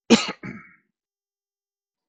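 A man clearing his throat: a loud, rough burst followed by a shorter, weaker one, both within the first second.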